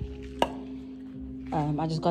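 A single sharp clink of a glass set down on the kitchen counter about half a second in, over a faint steady hum. A voice starts near the end.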